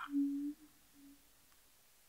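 A woman humming: one steady note held for about half a second, then a shorter, fainter note at about the same pitch.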